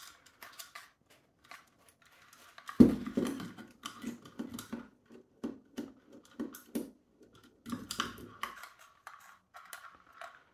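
Irregular small clicks and knocks of plastic and metal airsoft gun parts being handled and turned over in the hands, with one louder knock about three seconds in.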